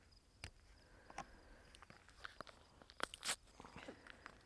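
Faint crinkling and small clicks of a foil pheromone-lure packet being handled and opened with rubber-gloved hands, with a louder crinkle about three seconds in.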